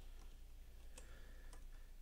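A few faint computer mouse clicks, the clearest about a second in and another half a second later, over a low steady hum.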